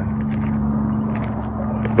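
A motor running steadily at one low pitch, a constant hum with no change in speed.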